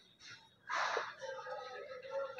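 Cloth rubbing across a whiteboard: a short wiping swish about three-quarters of a second in, with faint voices in the background afterwards.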